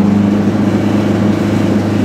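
Goggomobil's air-cooled two-stroke twin engine running steadily under way, heard from inside the small car's cabin.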